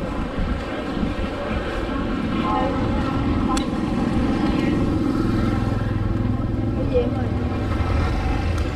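Motor scooters running along a busy street, their engines growing louder and closer about halfway through, over a background of voices.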